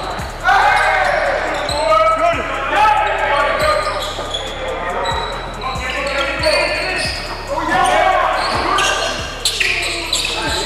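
Basketball bouncing on a wooden gym court, a thud roughly every two-thirds of a second, under players' indistinct shouts in a large, echoing sports hall.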